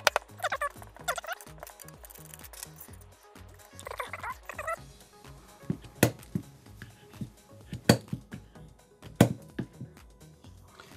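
RP Toolz mitre cutter's blade chopping through hollow plastic tube: sharp snaps, the loudest three in the second half, over background music.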